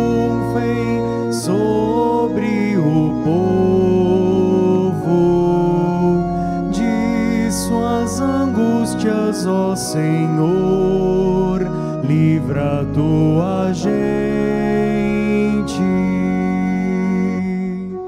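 Church music for the entrance hymn of a Mass: an organ plays sustained chords under a wavering melody line, with no clear words.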